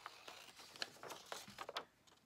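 Scissors cutting paper: several short, crisp snips with the sheet rustling as it is turned between cuts.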